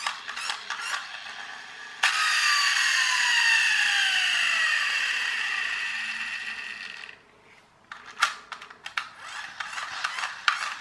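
Tonka friction-flywheel toy car motor, its gears just cleaned of hair and greased, spinning down: a whine that starts suddenly about two seconds in and falls steadily in pitch as it fades out over about five seconds. Rapid clicking and rattling from the toy being handled comes before and after the whine.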